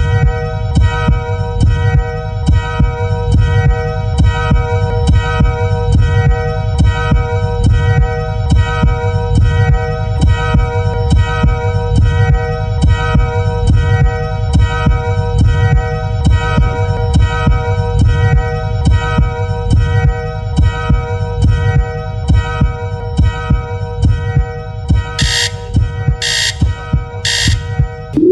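Countdown timer sound cue over the hall speakers for a 30-second team thinking period: a steady low pulse under a sustained held tone. Near the end come three sharp beeps about a second apart, then the sound cuts off.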